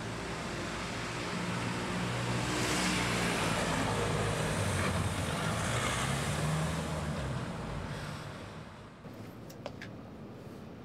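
A motor vehicle passing on the street: its engine hum and road noise build up, then fade away over several seconds.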